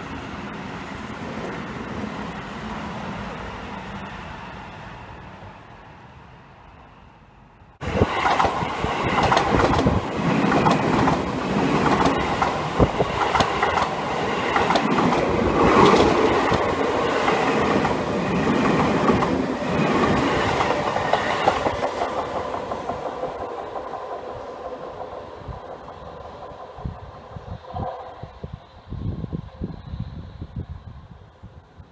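Seibu 20000 series electric commuter train. A train fades in the distance, then after a sudden jump about 8 s in, one passes at close range with wheels clattering over rail joints, before dying away over the last several seconds.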